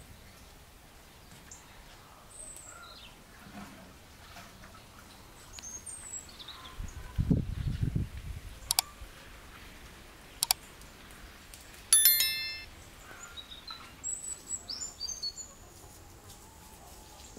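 Small birds chirping now and then over a quiet outdoor background, more busily near the end. Two sharp clicks, then a short bright ding about twelve seconds in, the loudest sound here, typical of a subscribe-button animation's click and bell sound effects. A low thump comes about seven seconds in.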